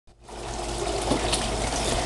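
Steady rush of circulating pool water with a faint low hum, typical of a swimming pool's pump and return jets running.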